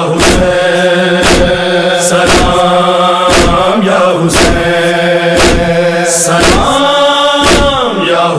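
Devotional music: a chanted salaam to Husain, a voice holding long notes over a beat struck about once a second.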